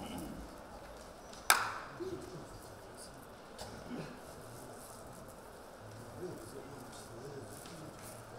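A single sharp handclap from a standing monk debater, about a second and a half in, loud and ringing briefly against faint low murmuring voices.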